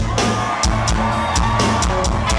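A live rock band vamping a groove: a sustained bass line with drums and regular cymbal hits.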